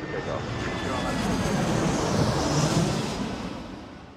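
A jet aircraft flying past: a rushing engine noise that swells to a peak a little past the middle and then fades away.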